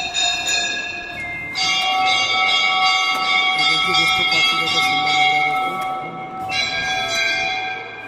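Temple bells rung by hand, each stroke leaving a long, slowly fading metallic ring. A bell is struck about a second and a half in and again after about six and a half seconds, over a low murmur of voices.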